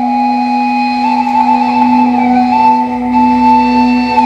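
Romanian caval (long wooden end-blown flute) playing a slow melody of long held notes that step gently upward, over a steady low drone.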